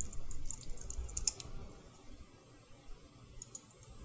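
Computer keyboard typing: a quick run of key clicks in the first second and a half, then a few more faint clicks near the end.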